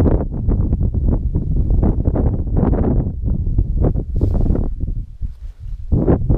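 Wind buffeting the microphone: a loud low rumble with rustling crackles that eases briefly near the end.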